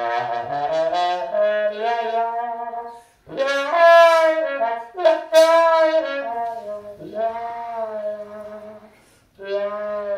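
Solo trombone playing phrases of held notes that step between pitches, with short breaks about three seconds in, about seven seconds in and near the nine-second mark.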